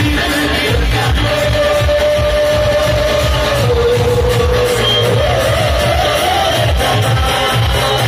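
Live Telugu devotional song, amplified: a singer holds long, slowly wavering notes over a steady, loud drum beat.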